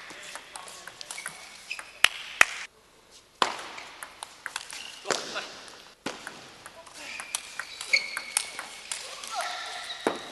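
Table tennis rallies: the ball ticks off the table and rackets in quick exchanges, with two sharp, loud hits about two seconds in, over voices and shouts in the hall. The sound drops out briefly twice where the play is cut.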